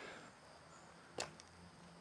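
Quiet outdoor background with a single short, sharp click a little over a second in.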